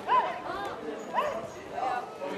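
A dog barking twice, about a second apart, short arched barks over the voices of people around it.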